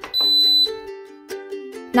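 Instant Pot Duo Crisp electric pressure cooker giving one high beep, about half a second long, as its pressure-cook program starts. Light plucked-string background music plays throughout.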